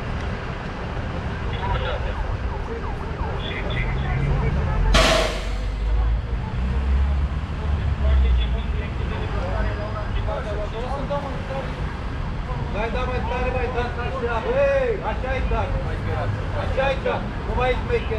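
Low street-traffic rumble with the stopped city bus running, voices talking in the background, and one short sharp hiss about five seconds in.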